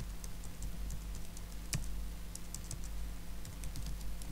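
Computer keyboard typing: irregular keystroke clicks, with one louder key strike a little under two seconds in. A low steady hum runs underneath.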